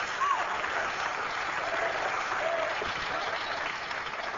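Congregation applauding steadily, with a few faint voices calling out.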